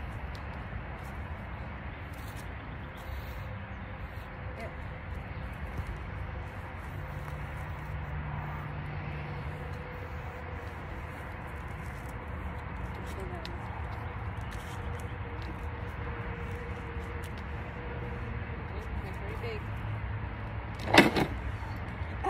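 Steady low outdoor background rumble of a street, with a short voice near the end.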